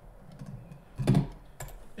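Computer keyboard clicks as a spreadsheet is scrolled: a few light clicks, a louder knock about a second in, then one more sharp click.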